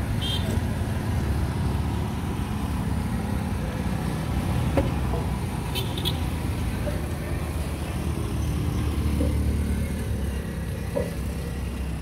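Roadside street ambience: a steady low rumble of traffic and motorcycles on the road, with faint voices in the background.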